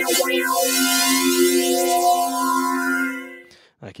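Korg microKorg synthesizer playing a short run of notes into a held chord through an Electro-Harmonix Small Stone phaser, its tone sweeping slowly. The chord fades out shortly before the end.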